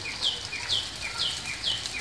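A small bird chirping repeatedly, short high calls that slide downward, about two a second.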